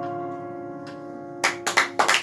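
The last chord of a piano and cello, held and slowly dying away, then the audience starts clapping about a second and a half in.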